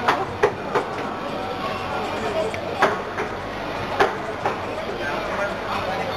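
Indistinct crowd chatter from shoppers in a busy market hall, with a few sharp clacks and knocks standing out: three close together near the start, then single ones about three and four seconds in.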